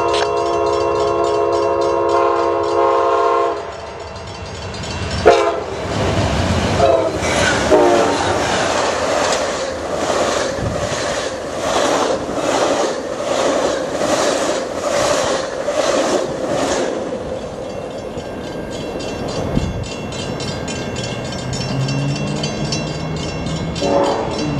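Amtrak Coast Starlight, led by GE P42DC locomotive 87, sounding its multi-note air horn chord for about three and a half seconds. The locomotive and its bilevel cars then pass close by, wheels clacking over rail joints about every 0.7 seconds, and the rumble fades as the train moves away.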